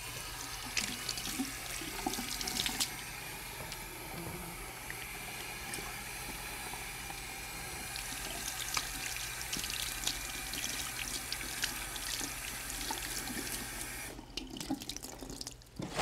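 Tap water running steadily into a small basin sink while hands are scrubbed under the stream. The water shuts off about fourteen seconds in, followed by a few short rustles and clicks as paper towels are pulled from a wall dispenser.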